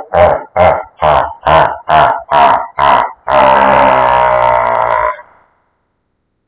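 Deep, grunting voice-like sound: a run of pulses about two and a half a second, then one long held note that cuts off suddenly about five seconds in.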